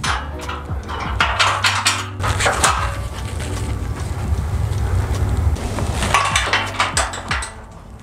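Metal clinking as a steel L-pin is worked into the hinge joint of a steel trailer frame: a spell of clinks in the first couple of seconds and another about six seconds in. Background music with a steady low bass runs underneath.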